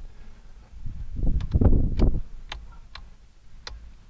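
A person climbing into the back of a van, with low bumps and shuffling about a second in, then a string of sharp clicks, about seven, from small switches being flipped to turn on the interior lamps.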